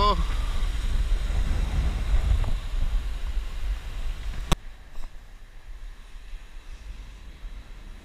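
Rumbling wind noise on the microphone, ending at a single sharp click about four and a half seconds in, after which only a faint steady background remains.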